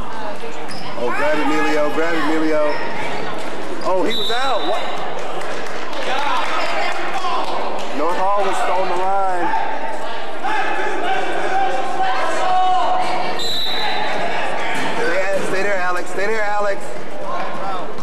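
Gym noise of a youth basketball game: spectators and players shouting over one another, and a basketball bouncing on the hardwood floor. A short, high, steady tone sounds twice, about 4 s and about 13.5 s in, like a referee's whistle.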